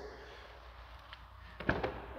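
Quiet room tone, then a few quick sharp clicks near the end as the driver's door handle of a Dodge Challenger is pulled and the latch releases.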